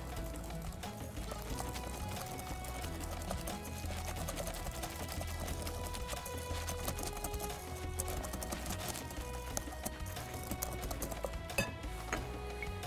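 Wire whisk beating batter in a glass bowl, with quick repeated clicks of the wires against the glass, over background music.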